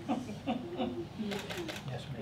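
Quiet, indistinct talking, with a few short hissing sounds near the end.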